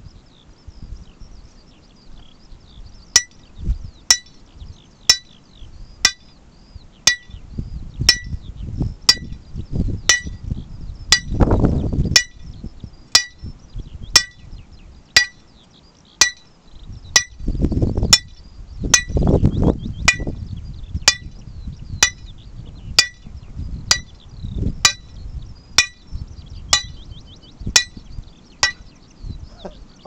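Lump hammer striking the top of a steel hand-drilling rod about once a second, each blow a sharp metallic clink with a short ring, starting about three seconds in; the rod is turned between blows to bore into rock, as in traditional Cornish two-man hand drilling.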